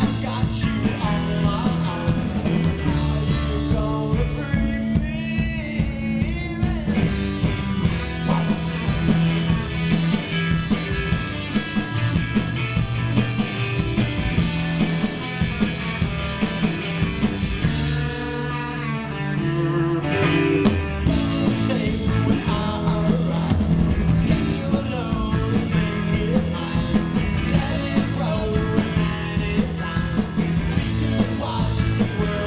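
Live rock band playing a song at full volume: electric guitars, electric bass and drums, with a steady beat.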